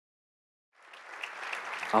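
Audience applause fading in after a moment of dead silence and growing steadily louder.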